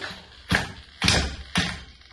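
Four short, quick pulls of a Stihl MS 440 chainsaw's recoil starter cord, about two a second, each one turning the engine over briefly without it catching.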